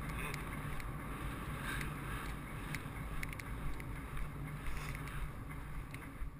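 Wind rushing over a helmet-camera microphone on a galloping racehorse, with a steady low rumble and scattered sharp clicks.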